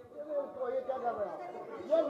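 Indistinct speech: voices talking at once, too blurred for words to be made out.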